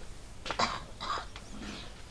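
A man's short breathy throat and mouth sounds close to a handheld microphone: two brief noisy bursts, about half a second and about a second in, much quieter than his speech.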